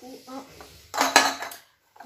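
Empty food and drink packaging clattering together inside a reusable tote bag as it is handled and opened, a sudden burst of knocking and rattling about a second in that lasts about half a second.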